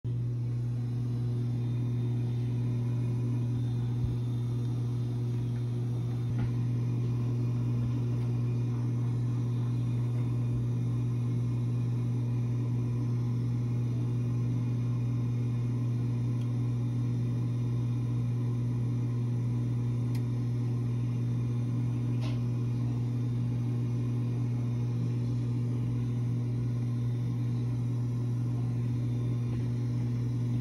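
Coleman Evcon mobile home furnace humming steadily during its startup sequence, a motor running while the burner waits to light, with a few faint clicks.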